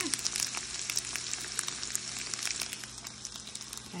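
Tofu and deer meat sizzling in hot oil in a pan: a steady hiss dotted with small crackles, easing slightly near the end.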